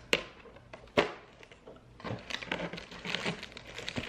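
Cardboard advent calendar door being pushed open with two sharp snaps, then a small plastic bag crinkling and rustling as it is pulled out of the compartment.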